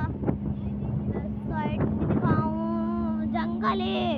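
Vehicle engine running with a steady low hum while the vehicle drives along. Over it, a voice sings or calls out in long drawn-out notes during the second half.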